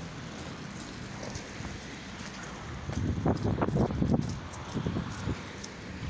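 Outdoor street noise on a wet city street: a steady hiss of traffic with wind on the phone's microphone, rising to a louder, uneven rumble about three seconds in that lasts a couple of seconds.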